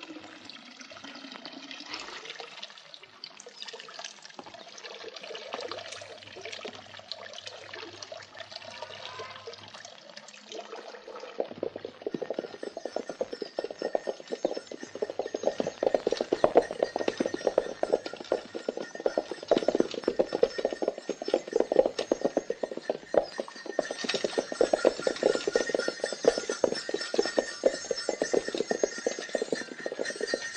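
Water running from a stone spring's spout. About ten seconds in, a louder, dense, rapid clatter with steady high tones over it takes over and runs on.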